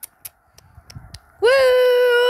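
A child's voice calling out a long, steady 'woooo' like a howl, starting about one and a half seconds in after a few faint clicks.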